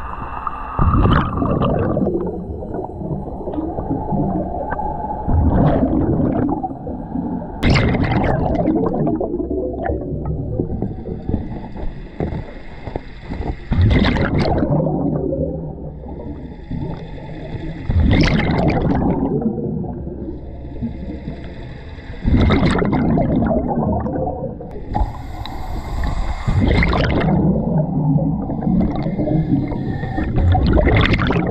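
Scuba diver breathing underwater through a regulator: a whistling hiss on each inhale, then a gurgling rush of exhaled bubbles, a breath every four seconds or so.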